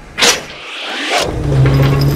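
A quick cartoon whoosh about a quarter second in and a second swish after it. Then a metro train car's steady rumble and low hum starts and grows louder.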